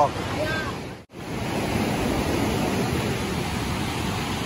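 Steady rushing roar of the Niagara River's whitewater rapids, cutting out abruptly for a moment about a second in before carrying on evenly.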